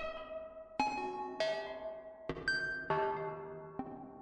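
Behringer ARP 2500 modular synthesizer playing a self-generating rhythmic pattern of two-oscillator FM tones through an EHX Cathedral reverb pedal. About seven pitched notes come at uneven spacing, each starting sharply and fading out.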